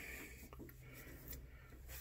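Near silence: a faint steady low hum with a few soft ticks of handling.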